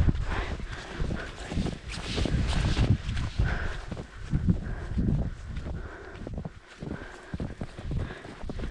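Footsteps trudging through deep, wet, heavy snow, a soft thump with each step, over a low rumble of wind on the microphone.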